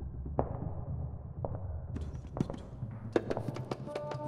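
Sparse taps and knocks over a low hum, like the opening of a percussive music piece. The strokes come quicker and sharper in the second half, with a quick cluster near the end.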